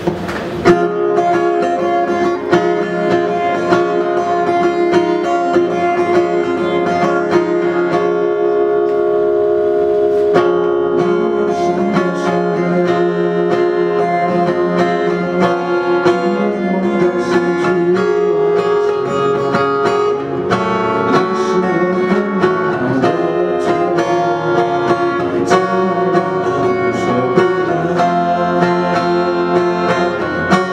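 Acoustic guitar playing chords steadily through the intro of a song.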